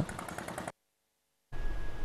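Low background noise that cuts off abruptly within the first second, a moment of dead silence, then steady room hiss with a faint thin high tone. This is the gap at an edit between a field report and the studio.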